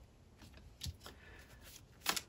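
Near silence with faint handling of oracle cards on a table: one soft tap a little under a second in.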